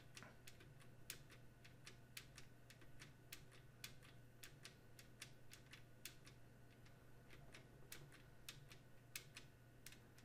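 Near silence with a series of faint computer keyboard key clicks, about two or three a second, as a key is tapped repeatedly to step through a list; a steady low hum underneath.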